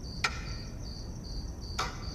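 Crickets chirping, a high-pitched chirp repeating a couple of times a second, with two soft clicks, one just after the start and one near the end.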